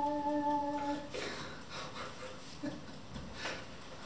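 A Casio XW synthesizer keyboard holding a sustained chord that stops about a second in, followed by a few soft, breathy bursts of laughter.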